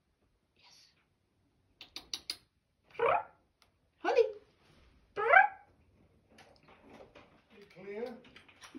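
A domestic cat meowing three times, short pitched calls about a second apart, starting about three seconds in. A few short clicks come just before the first meow.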